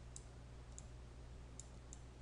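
Four faint computer mouse clicks, spaced out, over a steady low electrical hum.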